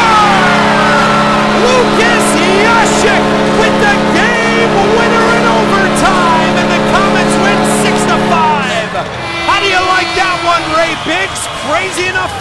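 Arena goal horn sounding a steady low chord for about eight and a half seconds, signalling a home-team goal, then stopping while the crowd keeps cheering and shouting.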